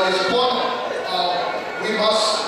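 A man speaking continuously into a handheld microphone.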